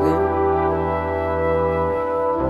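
A small brass band of flugelhorns, French horn, trombone and tuba holding one sustained chord over a steady low bass note.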